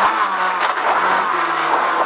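Fiat Seicento Kit Car's four-cylinder engine heard from inside the cockpit, revs falling at first and then running lower and steady as the car brakes and shifts down from third to second for a hairpin.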